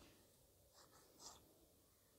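Near silence, with a few faint, short scratching strokes of a stylus or fingertip rubbing on a touchscreen about a second in, as handwriting is erased.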